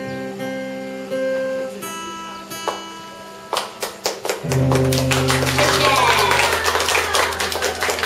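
Acoustic guitar ensemble playing: a held chord rings and slowly fades, then strumming picks up and the music comes in louder about halfway through.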